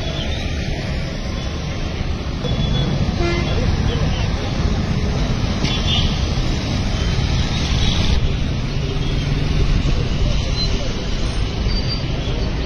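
Steady road traffic noise from passing cars and motorbikes, growing a little louder a couple of seconds in, with faint short horn toots.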